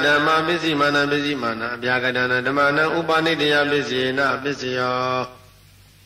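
A man chanting Pali verses in long, drawn-out tones, then stopping about five seconds in.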